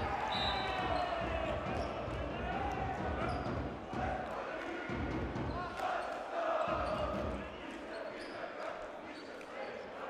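Volleyball being struck during a rally, sharp hits echoing in a large indoor sports hall, under a voice talking and the murmur of the crowd.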